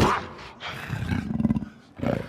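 A sharp hit at the start, then a low, rasping creature growl that builds for about a second and breaks off just before the end: an orc snarling in a fight.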